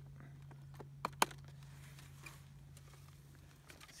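Two sharp plastic clicks about a second apart from the spool-head lid of a corded electric string trimmer as it is pressed and snapped into place, over a faint steady low hum.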